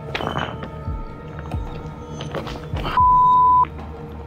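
Background music with a steady low beat; near the end a single loud, steady electronic beep sounds for well under a second and cuts off sharply.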